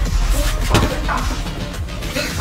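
Music with two sharp hits, one at the start and a louder one a little under a second in.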